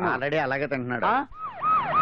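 Vehicle siren in a fast yelp, each note dropping in pitch, about four a second. It comes in about a second and a half in, after a man's speech.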